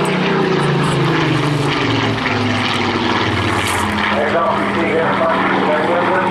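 Rolls-Royce Griffon V12 piston engine of a Spitfire PR Mk XIX flying overhead. The engine note falls in pitch over the first few seconds, then holds steadier.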